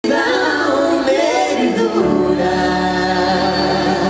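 Live music: several voices singing together, with a low, steady accompaniment coming in about halfway through.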